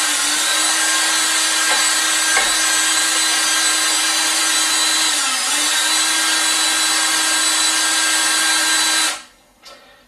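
Power drill spinning a degasser stick in a bucket of fermented wash, stirring out the dissolved gas before fining. The drill runs at a steady speed with a constant whine, dips briefly about halfway, and cuts off suddenly near the end.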